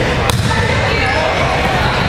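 Volleyball serve: one sharp smack of a hand striking the ball about a third of a second in, over background chatter of voices in the gym.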